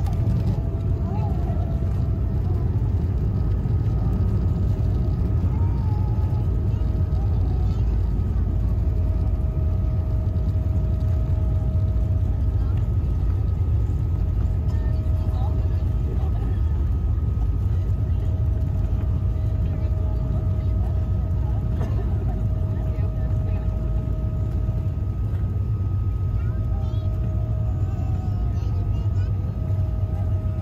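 Cabin noise of an Embraer E195 airliner on its landing roll: a steady, loud, deep rumble of engines, airflow and wheels on the runway with the spoilers raised, under a thin steady whine and a lower tone that comes and goes.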